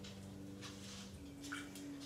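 Brewed coffee poured from a glass server into a small glass cup, a faint trickle of liquid, over a low steady hum.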